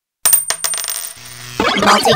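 Cartoon coin-drop sound effect: a quick run of metallic clinks with a high ringing tone that fades. About one and a half seconds in, music with rising sweeps starts.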